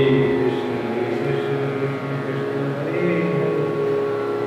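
A man's voice chanting in long held notes over a steady drone of sustained tones.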